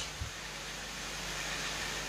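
Steady low background noise of the hall and sound system, a faint even hiss with a low hum, with one soft thump just after the start.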